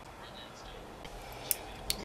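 Two sharp clicks about half a second apart in the second half, over quiet room noise, from small objects being handled.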